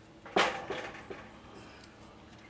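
A sharp knock about a third of a second in, followed by two lighter knocks, as an upright wooden deck post is pushed and shifted into place.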